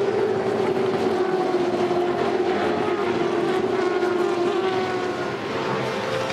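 Several V8 Supercar racing engines at high revs as a pack of cars goes by, a steady drone whose pitch slowly falls, with another engine's note rising near the end.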